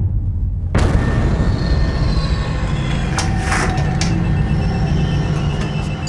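Trailer sound design over a low bass drone: a sudden boom hit about a second in, opening into a sustained rumbling swell, with a brief whoosh in the middle.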